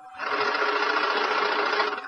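A loud, even burst of noise on a DC-9's cockpit voice recording. It starts sharply and stops after about a second and a half.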